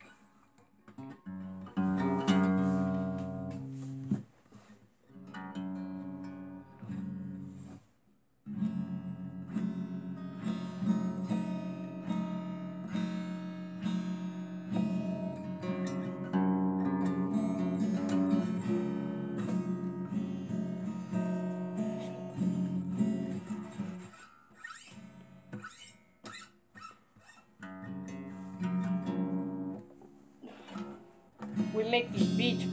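Acoustic guitar being strummed, chords ringing, with a short break about eight seconds in and softer playing near the end.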